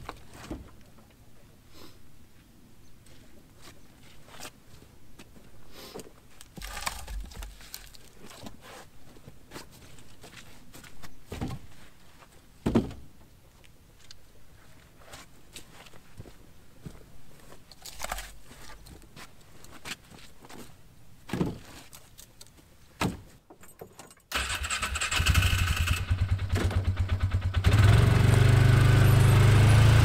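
Firewood rounds being dropped one at a time into the bed of a Polaris Ranger utility vehicle: single knocks every few seconds. About 24 seconds in, the Ranger's engine is heard running steadily close by, getting louder a few seconds later.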